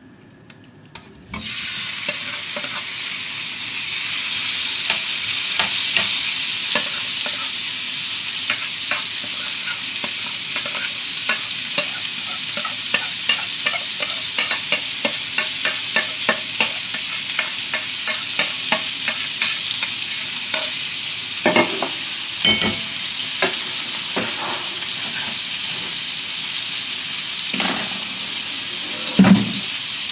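Marinated meat pieces hitting a hot non-stick frying pan about a second in, then sizzling steadily as they fry in their own marinade oil. Over the sizzle come a long run of light spoon clicks against the bowl and pan and a few louder knocks near the end.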